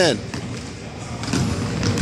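A basketball being dribbled on a hardwood gym floor during a spin move, heard as a few knocks in a large hall.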